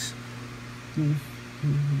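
A man's voice making two short hesitant filler sounds, about a second in and again near the end, over a faint steady low background.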